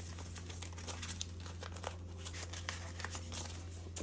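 Paper dollar bills and a clear plastic binder sleeve rustling and crinkling as cash is slid into the pocket, with many small quick clicks and rustles, over a steady low hum.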